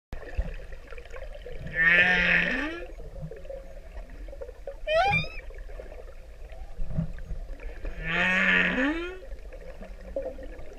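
Male humpback whale singing: a long call with a low held tone and an upsweep, repeated about six seconds later, with a short, steeply rising whoop between them.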